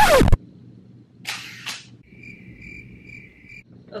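Comic edit sound effects: a loud short sound sweeping steeply down in pitch right at the start, a brief hiss-like rush about a second later, then a crickets-chirping sound effect for about a second and a half, the usual gag for an awkward, clueless pause.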